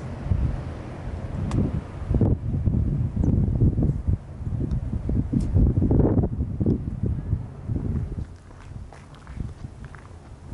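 Wind buffeting the camera microphone in irregular gusts, a heavy low rumble that eases off near the end.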